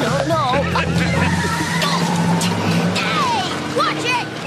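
Cartoon soundtrack: a dense mix of music, short sliding vocal cries and sound effects, with several sharp hits.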